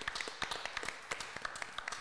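A small group of people clapping their hands in applause: dense, irregular hand claps throughout.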